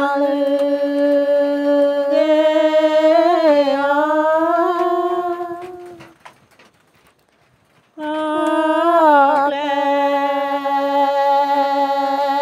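A solo voice singing a Karen (Pgaz K'Nyau) saw folk song, holding long drawn-out notes with slow pitch glides. It breaks off for about two seconds past the middle, then takes up the line again.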